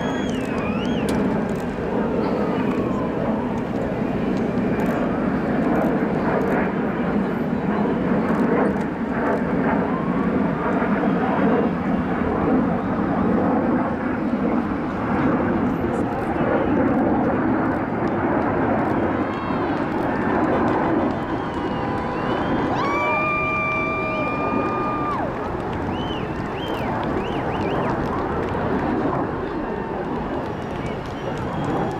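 A Boeing 747 Shuttle Carrier Aircraft's four jet engines rumble as it passes overhead, swelling and then easing. A crowd's chatter and calls mix in, with one held, high-pitched call lasting about two seconds near three quarters of the way in.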